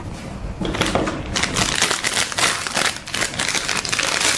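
Plastic ice-cream wrapper crinkling as it is picked up and handled, a dense, irregular run of crackles.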